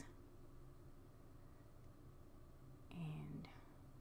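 Near silence: room tone, with one brief soft voice sound about three seconds in.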